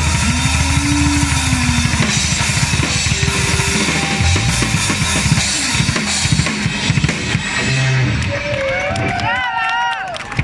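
Acoustic rock drum kit played hard in fills and cymbal crashes at the close of a rock song, over electric guitar. Near the end a wavering pitched sound glides up and down.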